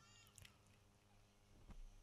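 Near silence with a faint low hum. A brief faint high-pitched cry comes right at the start, and there are a couple of very faint ticks later.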